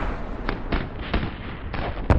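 About four sharp bangs over a low rumble, sounds of combat.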